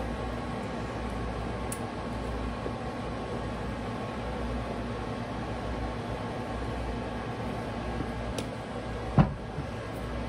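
A steady hum like a fan, under the soft sounds of a spatula scraping thick cake batter from a mixing bowl into a metal loaf pan. A single sharp knock about nine seconds in as the bowl is set down on the glass cooktop.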